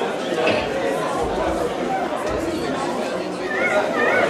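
Audience chatter in a hall, many voices talking at once, with two low thuds in the middle.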